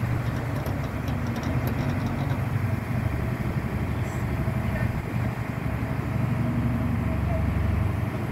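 Shipboard machinery running steadily with a low engine hum, a faint thin whine joining it about three seconds in and the hum swelling slightly near the end.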